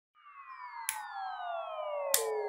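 A slowly falling, siren-like synthesized tone with overtones fading in at the start of a trap beat, with a short hissy hit about a second in.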